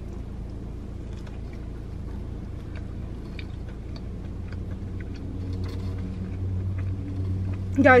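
Steady low rumble of a car, heard from inside the cabin, which grows louder with a deeper droning tone in the second half. Faint chewing sounds ride over it.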